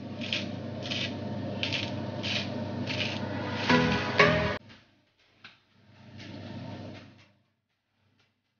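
Hand pepper grinder being twisted, a rasping grind repeating about every two-thirds of a second. It ends in a louder burst and cuts off abruptly about halfway through, and a fainter stretch follows.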